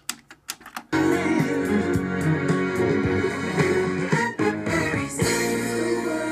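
A few clicks from the cassette deck's controls, then recorded music starts about a second in, played from a cassette through a vintage Pioneer SX-3700 stereo receiver into bookshelf speakers.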